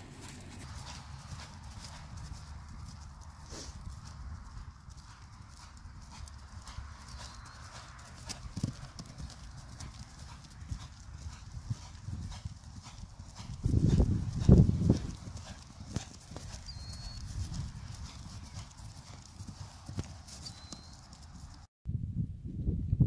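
Hoofbeats of a black quarter pony being ridden at trot and canter, with a louder low rumble a little past the middle.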